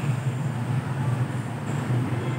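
A steady low rumble of motor vehicle traffic.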